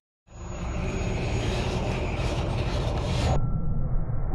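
Steady low rumbling noise from the closing logo sequence's soundtrack. It begins after a brief silence and turns duller about three and a half seconds in, when a thin steady tone comes in.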